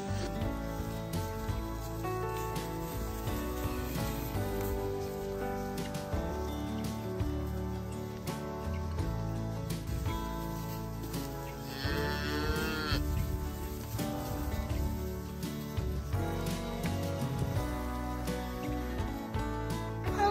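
Background music throughout, with one Angus cow mooing once, about twelve seconds in.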